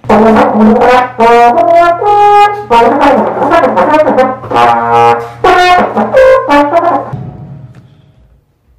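A trombone plays a loud jazz passage of quick and held notes, stopping about seven seconds in. The passage runs into a little trouble.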